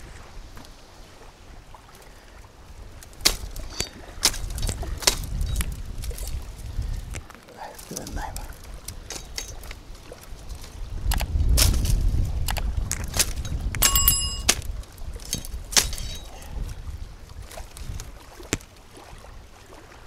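Pruning shears cutting twigs and branches of riverside brush: a scatter of sharp snips and snaps, with twigs crackling as they are pulled away. Wind rumbles on the microphone in gusts, and a brief metallic ring sounds about two-thirds of the way through.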